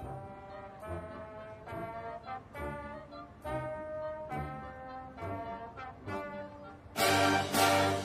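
Marching band brass playing chords in a steady pulse, about one a second. Near the end the music jumps much louder as the full band comes in.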